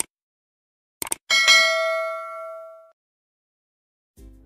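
Sound effect for an animated subscribe button: two quick mouse-style clicks about a second in, then a single bell ding that rings for about a second and a half and fades out. A short click comes just at the start.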